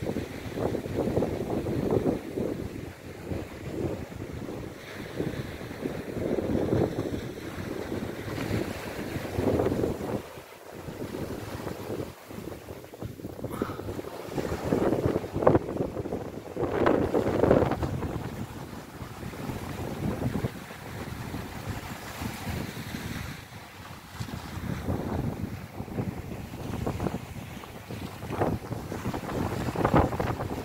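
Wind buffeting the microphone in irregular gusts, with brief lulls, over small waves breaking and washing up a sandy shore.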